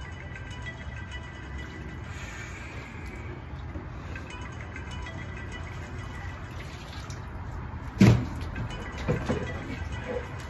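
Ice water sloshing and dripping in a plastic trash-can tub as a man rises out of it and climbs over the rim, with one loud thump about eight seconds in and a few smaller knocks after it.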